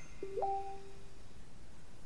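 Computer chat notification chime: a short electronic ping of two notes, a low tone followed a moment later by a higher one that slides up, both dying away within about a second.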